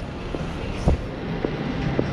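Steady low rumble of a large exhibition hall's background noise, with a few soft knocks, the clearest about a second in.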